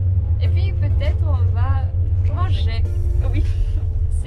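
Steady, loud low rumble of a double-deck Russian passenger train, heard inside the compartment. A woman's voice and background music play over it.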